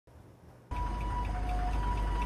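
Low, steady rumble of heavy vehicles at a freeway crash site, with a two-tone electronic warning signal alternating between a higher and a lower pitch about every half second; both start suddenly shortly into the clip.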